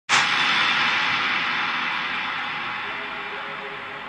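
A sudden crash of hissing noise that fades slowly over a few seconds, a cymbal-like swoosh effect opening the soundtrack music. Faint music tones come in near the end.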